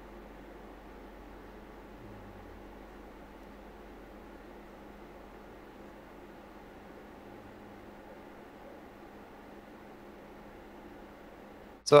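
Gaming PC under full load: a steady rush of air from the Gigabyte Aorus Master RTX 3080's three cooling fans, overclocked and set to a fixed 92% fan speed, with a faint steady hum beneath it.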